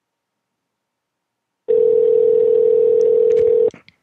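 Telephone ringback tone heard over the line while an outgoing call rings unanswered: one steady two-second ring starting about halfway through, followed by a few faint clicks on the line.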